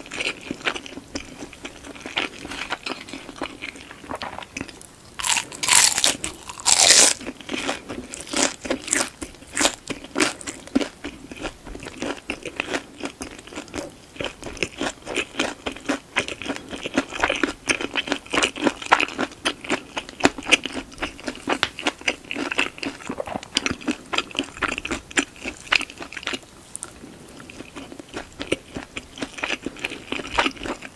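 Close-miked chewing of a mouthful of shumai pork dumplings, a dense run of wet mouth clicks. Two loud crunchy bites come about five to seven seconds in, and the chewing quietens near the end.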